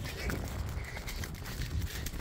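Hoofbeats of a ridden pony moving over a stubble field, with a low, uneven rumble of wind and movement on the phone's microphone.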